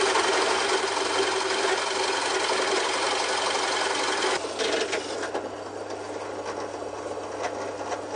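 Drill press boring through wood with a Forstner bit: a dense cutting noise over the motor's steady hum. About four and a half seconds in, the cut ends and the drill press keeps running, more quietly.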